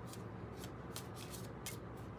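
A deck of tarot cards being shuffled by hand, quietly, with about five short crisp flicks of card edges over the two seconds.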